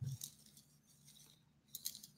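Faint handling of a fabric lanyard's clip hardware: a soft knock with small clicks at the start, then a couple of sharp clicks near the end.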